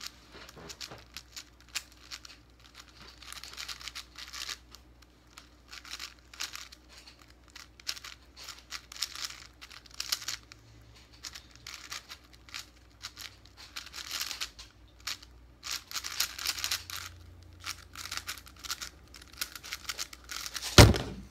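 A plastic 5x5 speed cube being turned fast by hand: rapid, irregular clicking and scraping of its layers, in flurries with short pauses between them.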